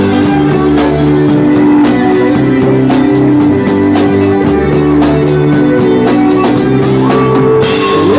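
Live rock band playing an instrumental passage: electric guitars and bass over a drum kit, with steady cymbal strokes and a cymbal crash near the end.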